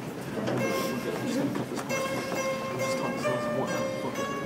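Đàn tranh, the Vietnamese plucked zither, played solo: single plucked notes that ring on after each pluck.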